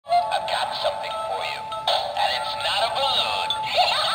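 A Halloween animatronic figure with glowing red eyes plays its voice track through a small built-in speaker. The voice is tinny and synthetic-sounding, with gliding pitch, and runs without a break.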